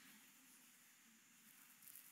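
Near silence: faint room tone with a light steady hiss.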